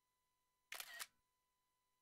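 A brief, sharp double noise, like two clicks in quick succession, about three-quarters of a second in, against near silence.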